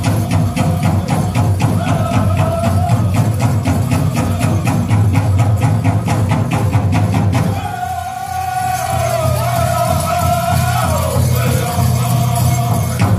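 Powwow drum group singing a fancy dance song in high voices over a big drum struck in a steady quick beat. About seven seconds in the drumbeat stops while the singers carry on alone, their line falling in pitch near the end.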